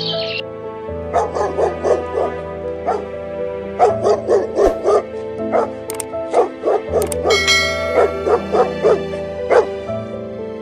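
A dog barking over and over in short barks, two or three a second, starting about a second in, with background music underneath.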